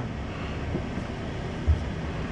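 Steady low rumble inside a car cabin with the car standing still: the engine idling under the air-conditioning fan, with a soft low bump a little before the end.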